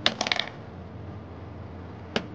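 A small hard object clattering onto a hard surface: a quick run of four or five clinks with a short metallic ring, over within the first half second.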